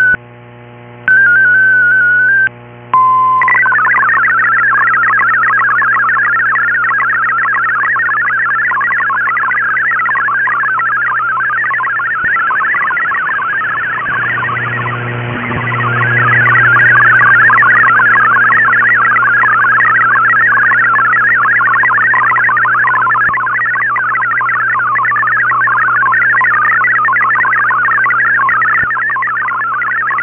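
MFSK-64 digital data signal received on shortwave in AM mode: a fast, busy warble of many tones packed between about 1 and 2 kHz, over a steady low hum. Near the start come two short wavering tone bursts, the RSID mode identifier, and a brief steady tone about 3 s in before the data begins. The signal sags and fades around 12 to 15 s in, then comes back up.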